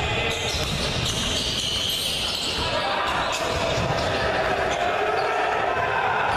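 Court sound of a basketball game in a large indoor gym: the ball bouncing on the hardwood floor with indistinct voices echoing in the hall. The sound starts abruptly.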